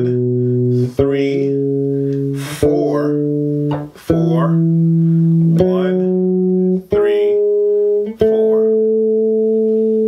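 Electric bass guitar playing the upper octave of an A major scale slowly, one plucked note at a time, each ringing about a second and a half: B, C♯, D, E, F♯, G♯, then the high A, held through the last couple of seconds.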